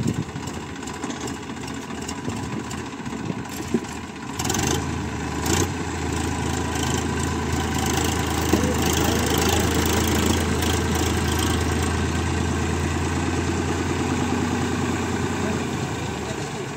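Three-cylinder diesel engine of a Massey Ferguson 7250 tractor carrying a mini combine harvester, running low at first. About four and a half seconds in it revs up, with a couple of knocks. It then holds at the higher speed while the machine drives, easing off slightly near the end.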